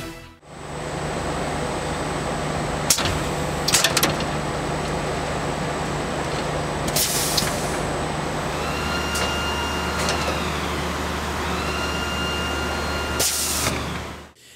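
Cardboard core-tube winding machinery running with a steady noisy hum. A few clicks come three to four seconds in, short hisses come about seven seconds in and again near the end, and a whine rises, holds and falls twice in the second half.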